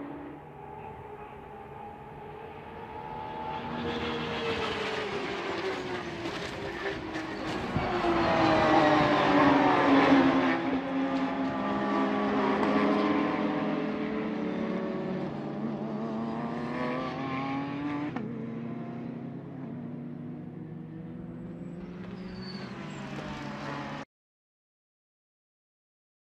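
A pack of Porsche 911 GT3 Cup race cars at racing speed, several flat-six engine notes rising and falling over one another as they pass. The sound builds to its loudest about eight to ten seconds in, then fades, and cuts off suddenly near the end.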